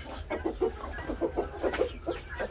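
Chickens in the coop clucking: a steady run of short clucks, several a second.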